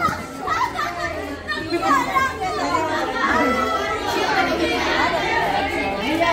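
Several young students talking at once, their voices overlapping into steady chatter with no single voice standing out.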